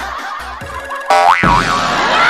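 A cartoon-style boing sound effect about a second in: a springy pitched tone that swoops up and down twice.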